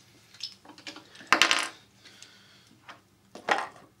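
Small toy robots and pieces clinking and clattering as hands pick them up and handle them over the arena floor: a few light clicks, a louder clatter about a second and a half in, and another near the end.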